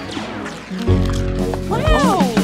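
Cartoon background music, with a short voiced call near the end that rises and then falls in pitch.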